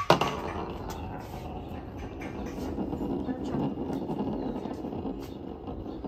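Handmade acorn spinning top striking a tabletop with a sharp click right at the start as it is set spinning, then a continuous low whir while it spins on the table.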